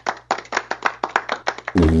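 A quick, uneven run of sharp taps, like handclaps, about six or seven a second, over a steady low hum. A man's voice comes in near the end.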